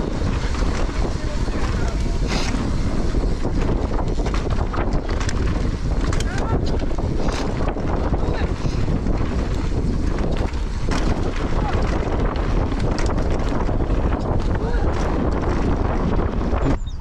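Wind rushing over the camera microphone during a fast mountain-bike descent, mixed with the bike's tyres rolling on dirt and a few short knocks and rattles from the bike over bumps.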